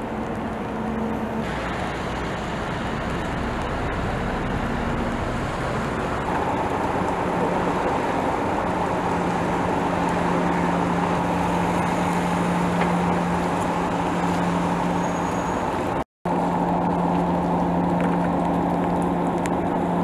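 Tugboat diesel engines running steadily under load, a continuous drone that grows louder and takes on a stronger humming tone about six seconds in. It drops out for an instant near the end.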